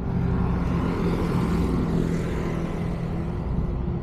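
An engine running steadily with a constant low hum, over a haze of outdoor noise.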